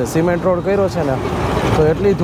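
A man talking while riding a motorcycle through town traffic, with the motorcycle's engine and road noise running low underneath.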